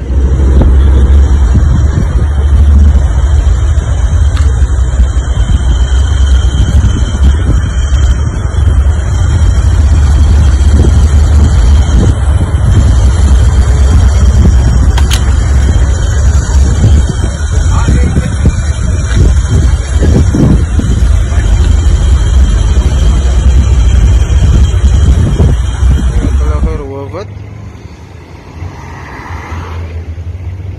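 Loud, continuous low rumble of wind and road traffic on a handheld phone microphone, with indistinct voices beneath it. It drops away sharply near the end.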